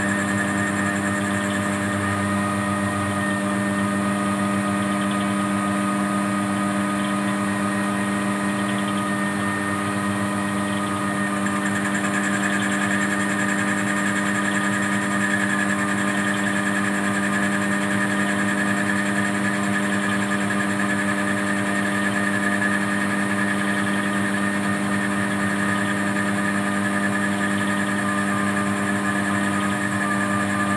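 CNC lathe running through a turning cycle: a steady hum of several tones from the spindle drive and feed motor. A higher whine grows stronger about a third of the way in.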